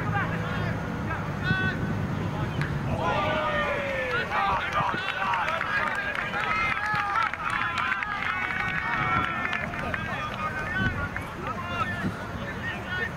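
Several voices shouting and calling out during a soccer match. A burst of many overlapping shouts builds about three seconds in and lasts until about ten seconds, while the ball is played in the air.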